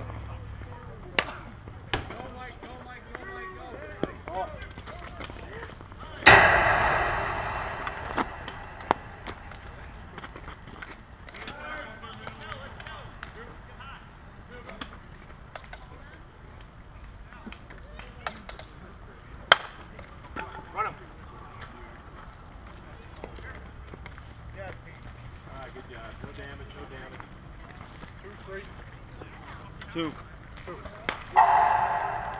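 Outdoor softball field sounds: faint distant voices and scattered sharp knocks. One loud sharp crack about six seconds in trails off over a second or so.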